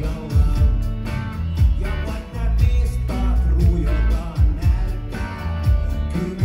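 Live rap-rock band playing a groove: heavy bass and kick drum on a steady beat, electric guitar, and vocals at the microphone, recorded from the crowd.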